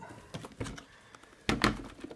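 Clear plastic dust bin of a Dyson DC35 handheld vacuum handled during emptying: a few light clicks, then a sharp double plastic clack about one and a half seconds in.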